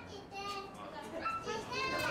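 Children's high-pitched voices and visitor chatter, with no clear words, rising near the end.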